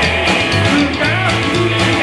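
Live rockabilly trio playing: electric guitar, upright double bass and drum kit, with the drums keeping a steady beat of about four hits a second.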